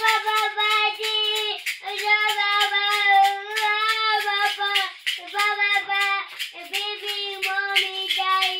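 A young child singing long, held notes without clear words, in a high voice, with short breaks between phrases.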